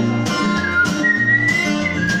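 Acoustic guitar playing a steady rhythm of alternating bass notes and strums, with a whistled melody over it; about halfway through, the whistle holds one long note that rises slightly.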